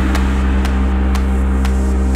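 Background music: a held low synth bass drone with a sharp click beat about twice a second.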